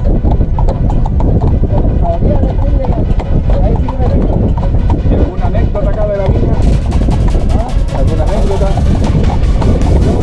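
A carriage horse's hooves clip-clopping on a paved road, over a steady low rumble from the moving horse-drawn carriage. Sharp clicks and rattles become more frequent about two-thirds of the way in.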